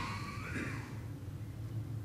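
Quiet meeting-hall room tone with a low steady hum and a faint gliding sound in the first second.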